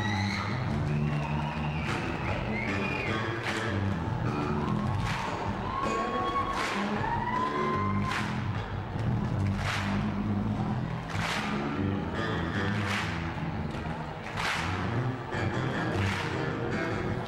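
Live band playing amplified music with drums and bass, a sliding lead line in the first half, and sharp crash accents about every second and a half in the second half.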